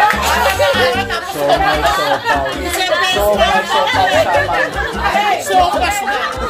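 Several women's voices talking and calling out at once over background music.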